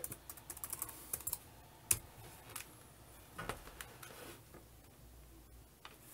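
Keys on a Hometech Alfa 400C laptop keyboard typed faintly as a password is entered: a quick run of key clicks, then a sharper single key press about two seconds in. After that come a few scattered taps, one with a soft thump.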